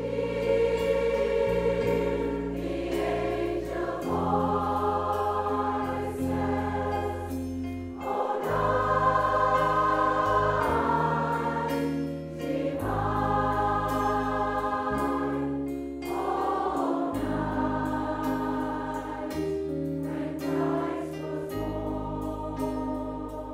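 A large amateur choir of a few hundred voices singing a Christmas song in slow, sustained chords, with band accompaniment. The low bass note shifts every couple of seconds.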